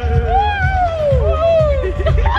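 Electronic dance music with a steady kick-drum beat, overlaid by a string of long, high wails that slide up and down in pitch.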